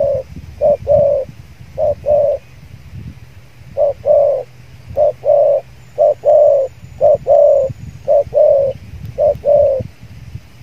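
Spotted dove cooing: a run of short, low coos, mostly in pairs, coming about once a second, with a short pause a few seconds in.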